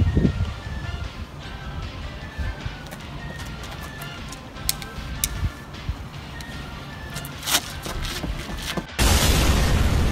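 Faint background music with a few sharp clicks, then near the end a sudden loud explosion blast lasting about a second.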